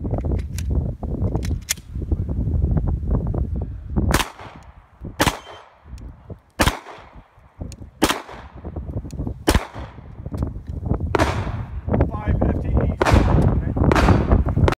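Semi-automatic pistol fired about seven times at a slow, deliberate pace, roughly one shot every one and a half seconds, each shot trailing off in an echo.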